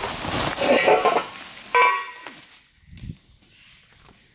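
Bubble wrap and foam packing being pulled out and crumpled by hand, crinkling loudly for about two seconds with a sharp squeaky crinkle near the two-second mark, then fading to quieter rustles.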